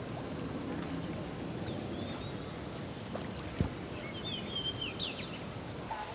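Steady outdoor background noise with a few faint high chirps, and a single soft low knock about three and a half seconds in.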